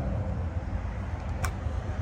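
Low, steady outdoor background rumble, with a single faint click about one and a half seconds in.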